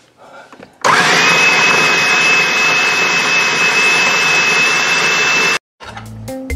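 Electric food chopper motor spinning up and running steadily with a high whine while chopping taro root for filling, then cutting off suddenly near the end.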